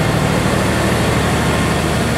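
A railway power van's generator running steadily: a low, even hum under a constant rushing noise, the sound of the van producing the electric supply for the whole train.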